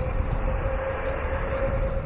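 A steady rumble and hiss with one constant mid-pitched hum running through it.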